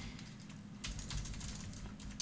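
Computer keyboard being typed on: a few faint, scattered keystrokes.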